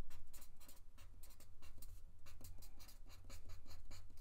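Pen writing block capital letters on paper: a quick run of short scratching strokes.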